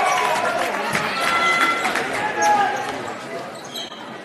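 Basketball game in a gymnasium: the ball bouncing on the hardwood court amid spectators' voices, growing quieter toward the end.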